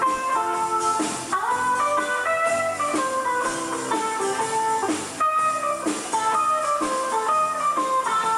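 Live country band playing an instrumental passage: a guitar picks a stepping melody over strummed chords, bass and drums.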